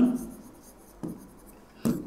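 A pen writing on an interactive whiteboard screen: faint scrapes and taps of the strokes, with a sharper tick about a second in and another near the end.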